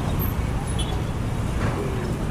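Steady low rumble of city street traffic, with faint voices in the background.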